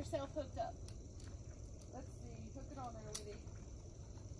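A woman's voice in short, soft fragments, with one sharp click about three seconds in.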